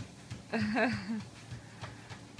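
Home treadmill running at a fast walking speed with a child's footfalls on the belt. A short wavering voice sound cuts in about half a second in and lasts under a second.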